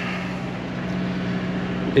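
Sailboat's inboard engine running steadily at constant speed: an even, low hum, heard from inside the cabin.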